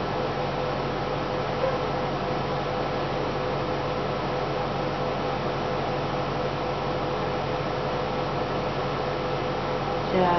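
Steady background hiss with a constant low hum and a faint steady tone underneath; no distinct event stands out.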